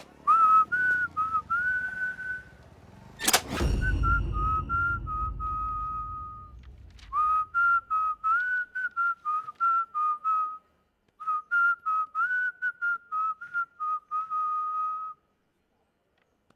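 A person whistling a jaunty tune in quick, choppy notes, in several phrases with a short break about two-thirds of the way through. About three seconds in comes one loud thud with a low rumble that dies away.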